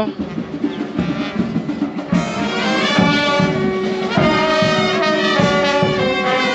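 Brass music, trumpets and trombones playing held notes, growing fuller about two seconds in.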